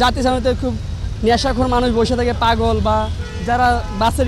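A man speaking in Bengali, answering close to the microphone, over a steady low rumble of road traffic.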